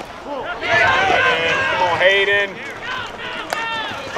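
Several voices shouting and calling out in raised, drawn-out calls, with one sharp crack near the end.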